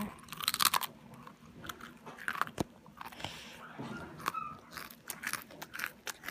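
A person chewing and crunching crisp food right at the microphone, in irregular crunches a few times a second.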